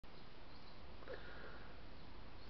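Faint steady background hiss, with a brief faint thin tone about halfway through.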